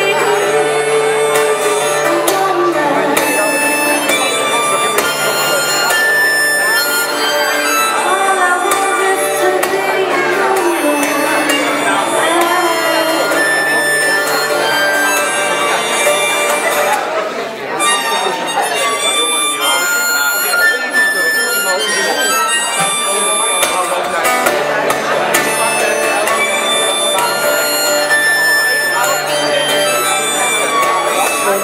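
Live band music without singing: an instrumental break with acoustic guitar under a held, gliding melodic lead line.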